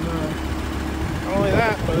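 Pickup's diesel engine idling steadily with a low hum, running on a blend of used motor oil and fuel.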